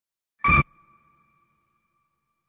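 A single short ping-like tone about half a second in, its two high pitches ringing on faintly and fading over more than a second, with silence around it.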